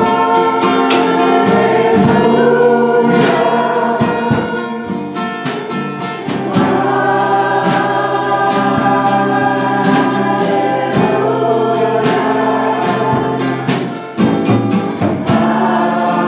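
A live worship song: a woman and the congregation singing together over a strummed acoustic guitar, with a regular beat.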